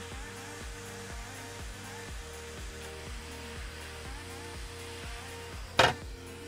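Hot air rework station blowing steadily, heating the solder under a connector on an SSD board to lift it off, over background music with a steady beat. A short, loud knock comes just before the end.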